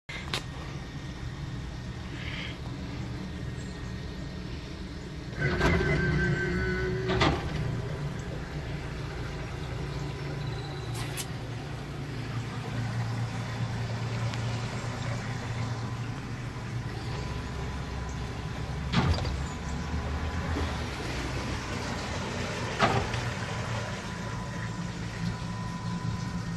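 Twin Mercury Verado 300 outboards idling at the dock: a steady low rumble. There is a louder pitched sound about five seconds in, and a few sharp knocks spread through.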